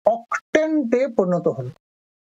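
Speech only: a man talking in Bengali, stopping near the end.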